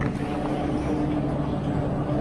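Chairlift loading-station machinery running with a steady low hum. A short click comes right at the start.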